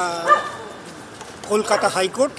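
A dog barking in short yelps, twice, behind a man's voice.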